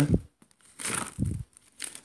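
A short rustle of paper pages being handled, about a second in, as a book is leafed through.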